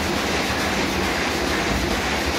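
Solna 225 offset printing press running, a steady, even mechanical clatter from its gear and chain drive. The noise is being traced to the lower part of the machine.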